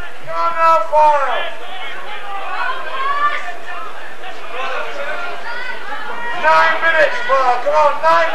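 Men's voices calling out and chatting among spectators, with the words unclear, over a steady hiss. The voices come in short spells: near the start, around three seconds in, and again from about six and a half seconds in.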